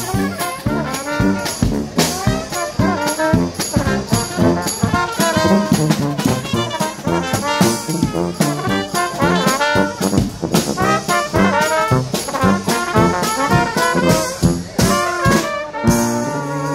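Live dixieland brass band playing a swing tune: trumpets and trombones carry the melody over a sousaphone bass line, with a marching bass drum and snare drum keeping a steady beat.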